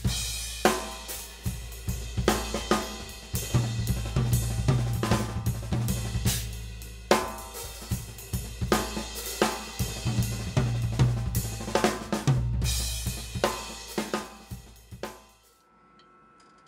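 Acoustic drum kit played in a ternary (triplet/swing) feel, a groove worked with a nine-stroke quasi-linear fill of snare, bass drum and cymbals. The playing ends on a cymbal hit that rings and fades away near the end.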